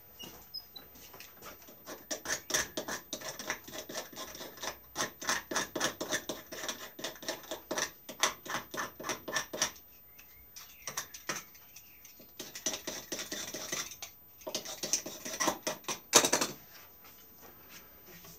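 Rapid back-and-forth rasping or sanding strokes on a wooden walking-stick handle, about four a second, in two runs with a pause between them and one louder stroke near the end.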